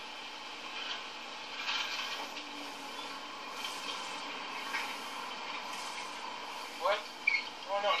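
Street traffic noise from a film soundtrack: a steady hiss-like rush with a couple of soft swells as vehicles go by. A man's voice cuts in briefly near the end.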